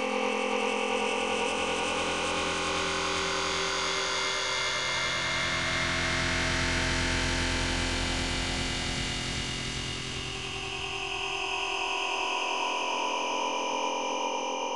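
A cacophony of hundreds of copies of the same cartoon soundtrack playing on top of each other, slightly out of step. Voices and effects blur into a dense, steady wash of noise that swells a little in the lows midway.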